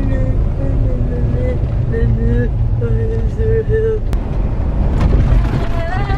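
A woman singing "na na na" to herself in a slow run of held notes, over the steady low rumble of the car's engine and tyres inside the cabin. Two brief clicks come in the second half.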